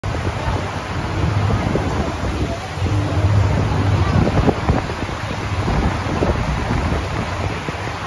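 Wind buffeting the microphone on a moving pontoon boat, over the low steady hum of the boat's motor and water washing past the hull.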